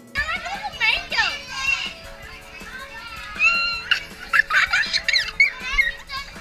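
Young children laughing, squealing and talking together in a crowded school lunchroom, with a boy's laughter among them, over soft background music.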